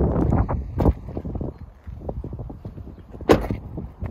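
Wind rumbling on the microphone for about the first second, then small clicks and knocks of the camera being handled, with one sharp knock about three seconds in.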